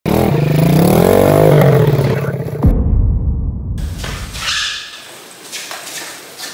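Small 125cc four-stroke kart engine revving, its pitch climbing and then easing back over about two seconds. About two and a half seconds in, the sound cuts abruptly to a duller rumble that fades away.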